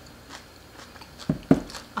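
A person chewing crisp yeolmu water kimchi, with faint scattered crunches, then two louder low thuds about a second and a half in.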